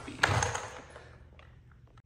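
A man's spoken word at the start, then quiet room tone with a few faint small clicks.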